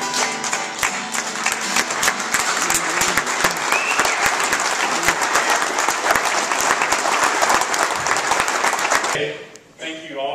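Audience clapping right after an acoustic guitar piece, with the guitar's last notes ringing out at the very start. The clapping dies away about nine seconds in.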